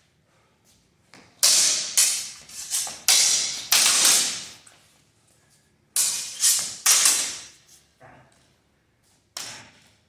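Steel longsword blades clashing in a sparring exchange, each strike ringing briefly. A rapid flurry of about five clashes comes in the first half, three more follow about six to seven seconds in, and one last strike comes near the end.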